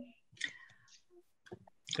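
A few faint clicks and a brief, faint snatch of voice, with speech starting just at the end.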